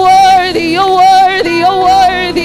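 Gospel worship singing: an amplified voice holds long, wavering notes and leaps sharply between pitches.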